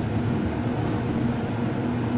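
Steady hum inside a Montgomery hydraulic elevator car with its doors shut, set to travel down.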